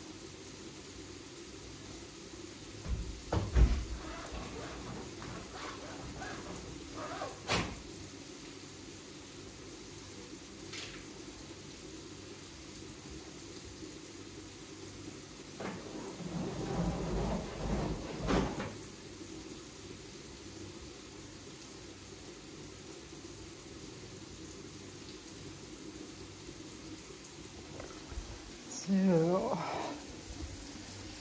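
Scattered household knocks and bumps, then a couple of seconds of sliding and rustling about two-thirds of the way through, over a steady low hum; a few words are spoken near the end.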